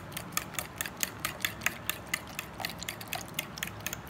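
A metal fork beating eggs, sugar and milk in a ceramic bowl, clinking against the bowl in a rapid, even rhythm of about six clicks a second.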